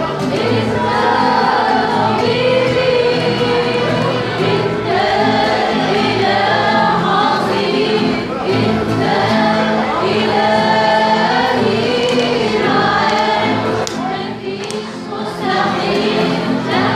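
A Christian hymn sung live by several voices over piano and guitar accompaniment, with a short lull in the singing near the end.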